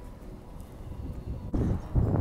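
Low background rumble with no distinct event. About one and a half seconds in it cuts abruptly to louder outdoor noise, with wind on the microphone.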